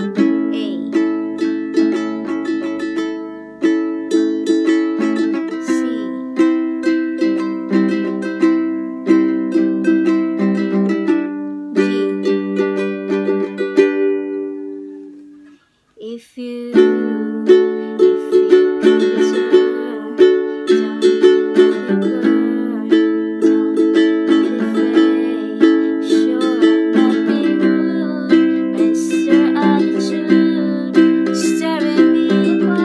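Ukulele strummed in chords, cycling through the D, A, C, G progression with a steady down-and-up strumming pattern. About halfway through, the strumming fades out briefly and then starts again.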